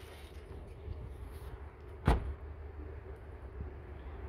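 A single sharp thump about two seconds in, over a low steady rumble.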